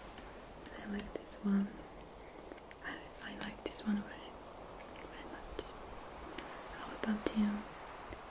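A woman's soft whispering voice with short hummed sounds in pairs, three times, and small mouth clicks between them.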